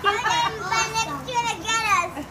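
A child's high-pitched voice calling out excitedly in several quick bursts with no clear words, the pitch rising and falling and dropping away at the end.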